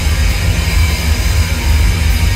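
Hard rock band playing live at high volume: distorted electric guitar and bass, heard as a dense, steady wash with heavy low end.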